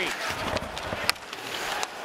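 Ice hockey game sound in an arena: steady crowd noise with sharp cracks from stick and puck play along the boards, the loudest about a second in and a smaller one near the end.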